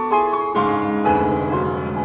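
Solo piano playing. A couple of chords are struck in quick succession, then about half a second in a deep chord with low bass notes is struck and held, ringing and slowly fading.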